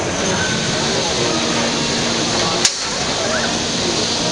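Robot combat arena during a fight between small combat robots: steady noise with faint background chatter, and one sharp knock about two and a half seconds in, such as a robot hitting another robot or the arena wall.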